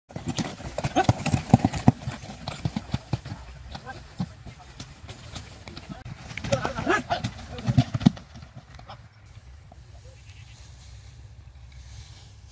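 A horse-drawn cart laden with paddy straw moving over dry, rough ground: hooves clopping and the cart knocking and clattering irregularly, dying down after about eight seconds.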